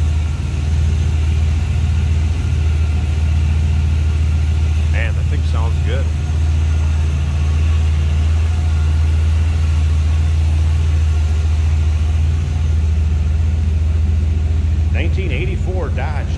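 A Dodge D150 pickup's V8 engine idling steadily, heard close up at the open hood. The hum drops a little near the end.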